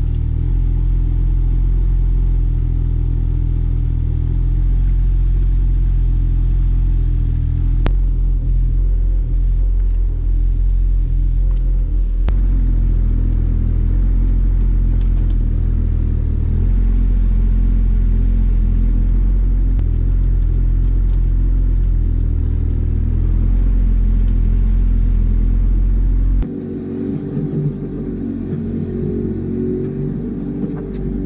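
JCB 8015 mini excavator's diesel engine running steadily under load as it digs soil with its boom and bucket, its note rising and falling slightly with the work. Near the end the sound changes suddenly, becoming quieter and losing its low hum.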